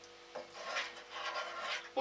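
A spoon stirring and scraping softly in a small stainless-steel saucepan of melting chocolate and cream, with a light tap about a third of a second in; the stirring keeps the chocolate from sticking to the bottom of the pan. A faint steady hum runs underneath.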